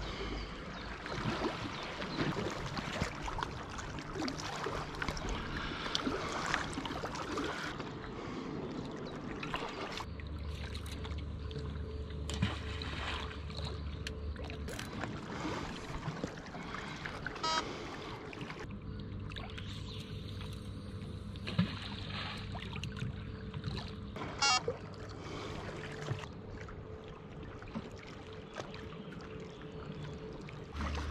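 River water lapping against a rocky bank, with small clicks and rustles of fishing tackle and groundbait being handled close by, and a few sharper clicks in the second half.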